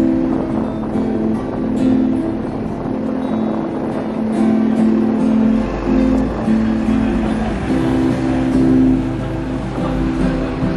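Two acoustic guitars playing a pop song cover live on the street, with a low traffic rumble from passing buses coming in about halfway through.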